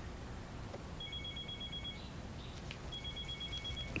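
Telephone ringing with an electronic ring: two high-pitched rings, each about a second long with a second's gap between, the first starting about a second in.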